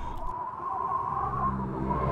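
Dark background soundtrack music: a low steady drone under a held high tone, swelling and growing louder near the end.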